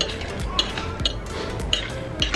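A metal fork clinking and scraping against a slow cooker's ceramic crock as a cooked breakfast casserole is stirred, several sharp clinks, with background music.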